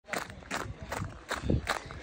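Running footsteps on a gravel track, a steady stride of about two and a half steps a second.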